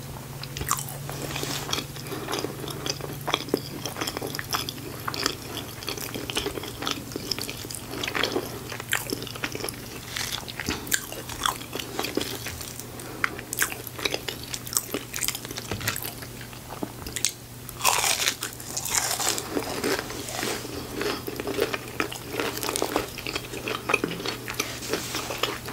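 Close-miked eating: wet chewing with many small mouth clicks and crackles as crispy battered onion rings and cheesy chili fries are bitten and chewed. A louder, crunchier bite comes about three-quarters of the way through.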